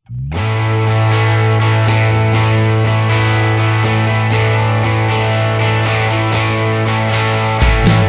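Background music led by distorted electric guitar, starting about a third of a second in on a long held low note and growing louder just before the end.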